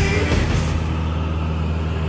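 Steady drone of a Cessna 172's piston engine and propeller heard inside the cabin, with background music that fades out about a second in.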